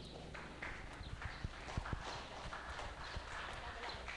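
Light, scattered hand clapping from a small seated audience: separate uneven claps rather than a full round of applause.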